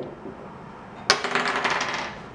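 Two translucent dice thrown onto a wooden tabletop. They land about a second in with a sharp clack, then rattle and tumble in quick clicks as they roll toward a stop.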